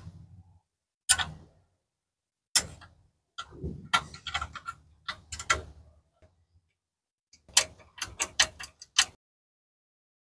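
Steel combination wrenches clicking and clinking against a bolt and nut on a truck's alternator bracket as they are loosened to slacken the fan belt. Separate sharp metal taps, bunched in the middle and near the end, with short pauses between.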